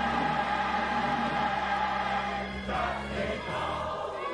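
Gospel church choir singing a long held chord, which breaks off about two and a half seconds in.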